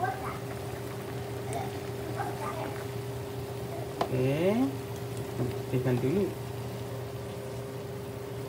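A pot of vegetable soup boiling on an electric glass-top stove, bubbling steadily under a constant hum. A short click about four seconds in, and brief voice sounds around four and six seconds in.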